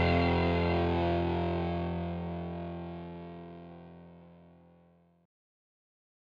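The band's final chord ringing out on distorted electric guitar, fading away steadily with the high end going first, then cut off about five seconds in.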